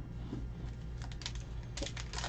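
Trading cards being handled: a few quick clicks and snaps of card stock as a stack is picked up and thumbed through, in clusters about a second in and again near the end, over a steady low hum.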